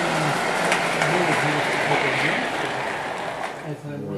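O-gauge model train running on three-rail track: a steady rolling noise of wheels on the rails that eases off near the end.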